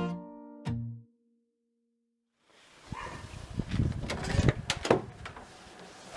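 Background music notes end about a second in. After a short silence come uneven rustling and sharp knocks of a packed tent bag being handled and pushed into a wooden garden shed.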